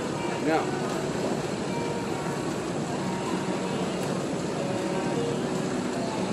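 Steady hum of a large room, like ventilation or air handling, with faint voices in the background and a short spoken "yeah" near the start.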